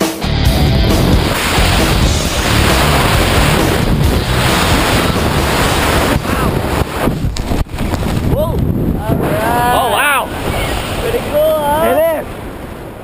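Loud wind rushing over the camera microphone of a tandem skydiver hanging under the open parachute, a steady roar that thins about two-thirds of the way through with a few sharp knocks. In the last few seconds, whooping voices rise over the wind.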